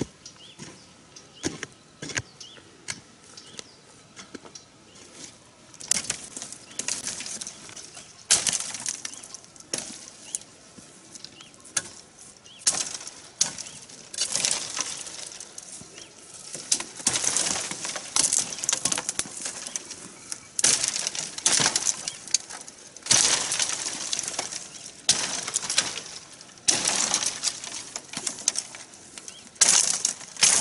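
Dry cut stalks and branches rustling and crackling as someone pushes through and handles them, in irregular bursts that come more often in the second half.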